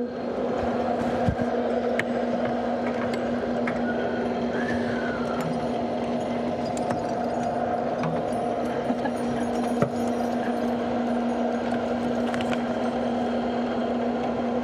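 Steady hum of spacecraft cabin ventilation fans and equipment, holding one constant low tone, with a few light clicks and knocks scattered through it.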